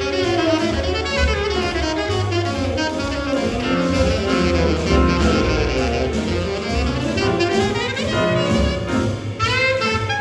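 Live jazz group playing, a saxophone leading over piano, upright bass and drum kit.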